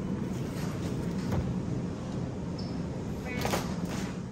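Supermarket background noise: a steady low rumble with faint voices, and a short rustle near the end.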